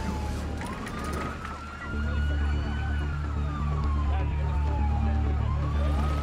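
Police car siren in a slow wail, one tone rising and falling: it dips, climbs over about two seconds, then falls slowly and starts to climb again near the end. A steady low hum joins about two seconds in.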